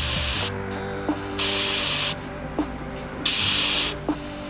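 Air hissing out of a Goodyear racing tire through the bleeder valve of an Intercomp digital tire gauge, in three short bursts each under a second long, as the pressure is trimmed by about half a pound.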